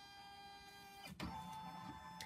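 Baby Lock Destiny embroidery machine's embroidery arm motors moving the paper scanning frame under the built-in camera during a scan: a faint, steady motor whine with a sharp click about a second in, after which the whine settles at a slightly different pitch.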